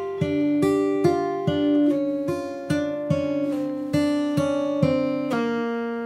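Martin J-40 acoustic guitar in open G tuning, fingerpicked: a slow blues arpeggio run of single notes, about two or three a second, stepping down in pitch. The last note is left ringing near the end.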